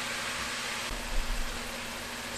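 Frozen broccoli sizzling in olive oil in a hot skillet, a steady even hiss.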